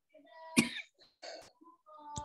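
A man coughing twice, the first cough about half a second in and a weaker one a little past a second.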